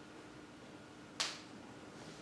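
A single sharp click about a second in, dying away quickly, over quiet room tone with a faint steady hum.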